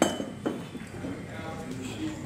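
Metal calibration weights clinking as they are set onto a platform scale's steel deck, loading it for calibration. A sharp clink with a brief ring comes first, then a second knock about half a second later.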